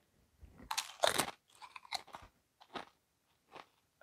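Two people biting into tortilla chips loaded with guacamole: loud crunches about a second in, then smaller, scattered crunches of chewing.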